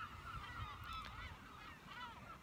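Faint, overlapping calls of distant birds, several at once, over a low rumble.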